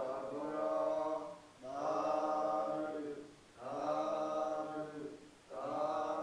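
Buddhist chanting in Pali: long, evenly held phrases of about two seconds each, with short breaks between them.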